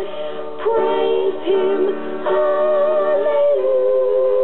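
A gospel song sung by female voices, holding long notes with vibrato and moving to a new note about every second.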